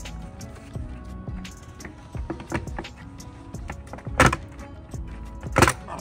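A Tesla Model Y's stock plastic Gemini wheel cover being pulled off the wheel by hand, with small clicks and then two loud sharp snaps a second and a half apart as its retaining clips pop loose. Background music plays throughout.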